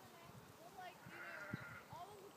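Faint, distant voices of people calling out, with one drawn-out wavering shout about a second in.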